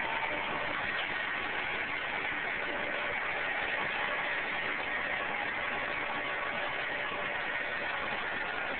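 Diesel engine of a 70-ton crane running steadily as a low, even drone with a faint hum, while the crane lowers a whole tree on its line.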